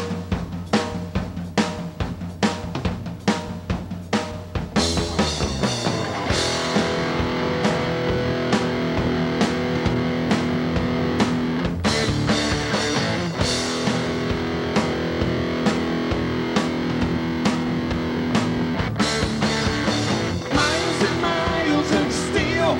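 Live rock band playing an instrumental intro in a psychobilly style. The drum kit opens with steady beats, and the full band, with electric guitars, comes in about five seconds in and keeps driving on.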